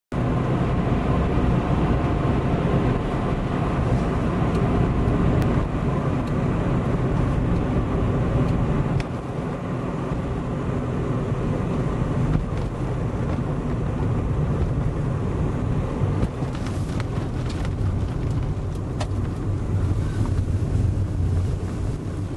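Steady road and engine noise heard from inside a car's cabin while it drives along, mostly low rumble, with a few sharp clicks in the last few seconds.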